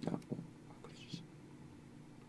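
A pause in a man's speech: the end of a spoken word at the very start, then faint breaths and small mouth sounds over quiet room tone with a faint steady hum.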